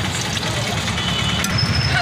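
Steady low rumble of street traffic engines, with a faint hiss of activity above it.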